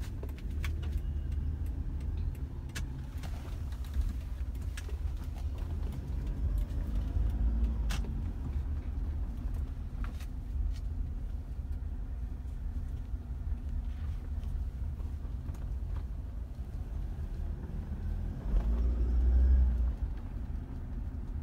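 Low, steady rumble of a car moving slowly, heard from inside the cabin, with a few scattered faint clicks; the rumble grows louder for a moment near the end.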